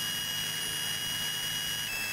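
Steady cabin drone of a light single-engine airplane in flight, engine and propeller noise heard from inside the cockpit. A thin high-pitched whine runs over it and steps down slightly near the end.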